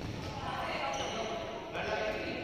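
Badminton rally: a racket strikes the shuttlecock sharply near the end, ringing in a large indoor hall, amid players' voices.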